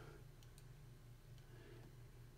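Near silence with a low steady hum and a few faint, short clicks from a computer mouse as a document is scrolled back up.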